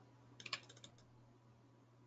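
A quick run of faint computer keyboard clicks about half a second in, lasting under half a second, with near silence around them.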